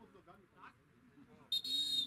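Referee's whistle blown once, a short shrill blast starting about a second and a half in, over faint voices.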